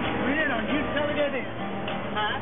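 Acoustic guitar strumming under several people's voices talking and singing.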